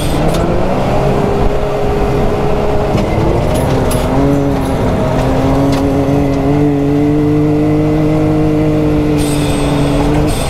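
Can-Am Maverick X3 Turbo RR's turbocharged three-cylinder engine running at high revs under throttle while the side-by-side is driven hard on a dirt track. The engine note holds a fairly steady pitch, drops briefly about three seconds in and climbs back to a steady higher note, over wind and tyre noise.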